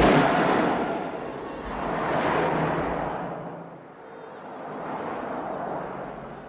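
A single loud revolver shot cuts off the opera music. It is followed by road traffic passing close by: a bus, then cars, each swelling and fading.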